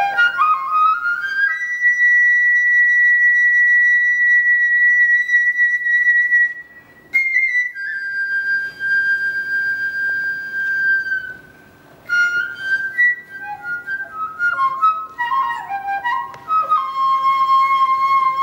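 Sogeum, the small Korean transverse bamboo flute, played solo. A quick rising run leads into a long held high note. After a short breath pause comes another long held note a little lower. After a second pause, an ornamented falling phrase settles onto a lower held note near the end.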